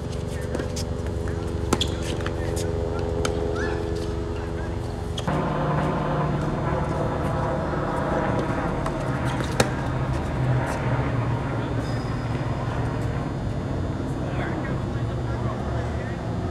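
Tennis ball struck by rackets on an outdoor court: sharp pocks scattered through the rally, the loudest near the start and about ten seconds in, over a continuous low rumble and hum that changes character abruptly about five seconds in.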